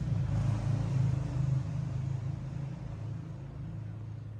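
Hands rubbing and kneading the neck and damp hair close to a clip-on microphone, a muffled, low rumbling rustle that is loudest in the first second and a half and then eases off.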